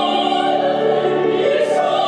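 Two women singing an operatic duet, their voices overlapping in held notes with a wide vibrato. A short sung 's' hisses near the end.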